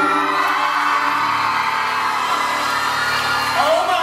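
The closing bars of a live pop duet, a man and a woman singing with band backing. Audience whoops and screams rise near the end as the song finishes.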